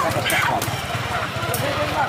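Busy street-market chatter: several voices talking over one another, none close to the microphone, with a few light clicks.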